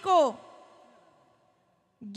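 A woman's voice, amplified through a microphone, ends a phrase on one word with a falling pitch. Its echo fades away over about a second.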